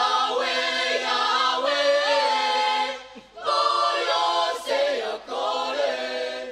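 Mixed choir of men's and women's voices singing a cappella in sustained phrases, breaking off briefly a little past halfway before the next phrase.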